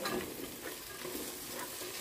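Sliced bell peppers and onions sizzling as they sauté in hot oil in a nonstick pot, with a wooden spatula stirring and scraping through them.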